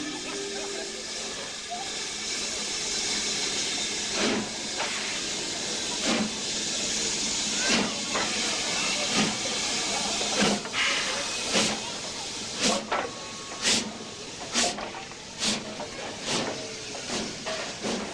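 British Railways Standard Class 9F 2-10-0 steam locomotive No. 92220 Evening Star with a steady hiss of escaping steam, then exhaust beats starting about four seconds in, some two seconds apart and quickening to under a second apart near the end, as the engine gets under way.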